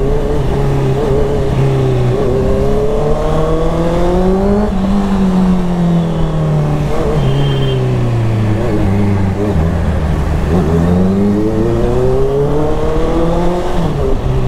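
Sport motorcycle engine heard from the rider's seat in town traffic, its pitch climbing for the first few seconds, falling away, dipping around the middle and climbing again near the end as the throttle is opened and eased, with wind rushing over the microphone throughout.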